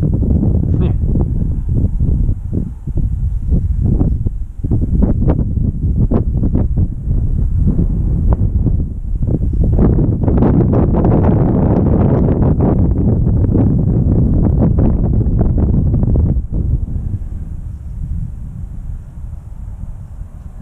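Wind buffeting the microphone in uneven gusts, a heavy low rumble that is strongest in the middle and eases off over the last few seconds.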